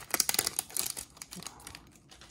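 Foil booster pack wrapper being torn open and crumpled: dense crinkling and crackling in the first second that fades off soon after.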